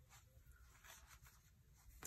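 Near silence, with faint brief rustles of fibre ribbon being handled as a closure is tied around a paper journal.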